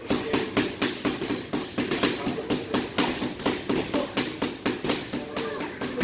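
Rapid flurry of gloved punches landing on a heavy punching bag, about five thuds a second in an even run.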